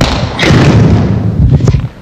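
A scuffle: a man grabbed and thrown down onto a hardwood gym floor, with heavy thuds and clothing rustle about half a second in and lasting around a second, mixed with bumps on the handheld microphone held by the thrower.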